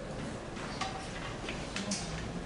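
A few short, light chalk taps and ticks against a blackboard, over a steady low room hum.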